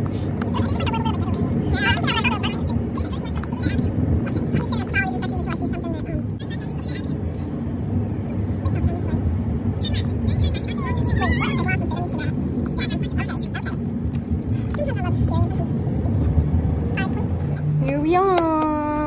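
Steady low road and engine rumble inside a moving car's cabin, with a voice heard now and then over it.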